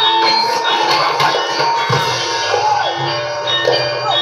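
Javanese gamelan music: bronze metallophones ringing out a steady repeating pattern, with a few sharp strokes among them.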